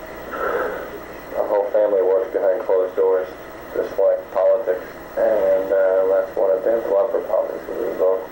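A man speaking on an old low-fidelity tape recording, the voice thin and muffled.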